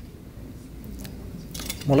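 Low room hum with a faint murmur and a few small clicks, then a man's voice starting at the very end.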